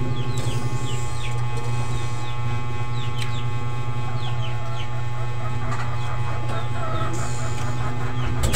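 A steady low hum runs throughout, with chickens peeping and clucking in the background as short falling calls every second or so.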